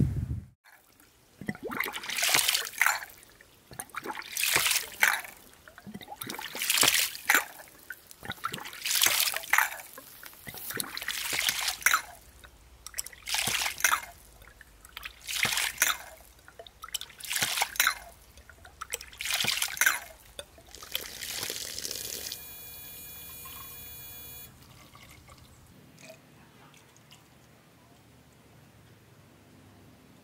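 Homemade ram pump working with a 5/4-inch slide check valve as its waste valve: water gushes out of the valve in evenly repeating pulses, about one every two seconds, ten or so in all. The valve's plug closes late, which lets the pump build about 2.8 bar. Near the end the pulses stop and a short steady hum is heard.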